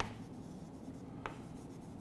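Chalk writing on a chalkboard: faint scratching strokes, with one short sharp click a little over a second in.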